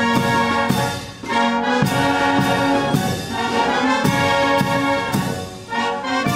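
Military brass band playing a national anthem in sustained chords, with short pauses between phrases about a second in and near the end.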